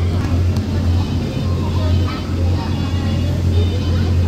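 Steady low hum of an inflatable bounce house's electric air blower running without a break, with children's voices over it.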